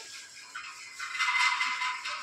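Peanuts poured from a plastic packet rattle onto a metal plate, loudest in the second half.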